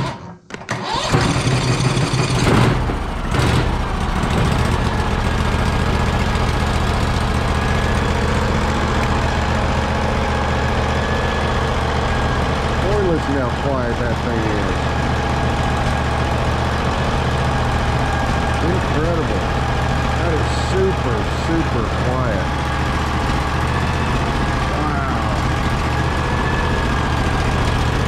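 Briggs & Stratton Vanguard engine electric-started on choke: the starter cranks for under a second, the engine catches and then runs steadily through its muffler.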